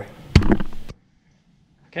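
A single sharp knock about a third of a second in, as a hand touches the camera, followed by brief handling noise; the sound then cuts out to dead silence as the recording is stopped.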